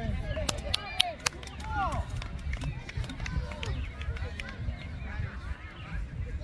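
Distant shouts and calls from players and spectators across an open field, over a low rumble on the microphone. A few sharp clicks come between about half a second and a second and a half in.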